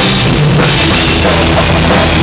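Live rock band playing loudly, with the drum kit and crashing cymbals to the fore over a dense, heavy wall of band sound.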